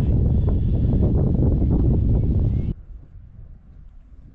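Wind blowing hard on the microphone, a loud deep rushing noise that stops suddenly about two thirds of the way through, leaving only a faint wind.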